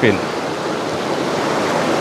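Steady rushing of a river's water.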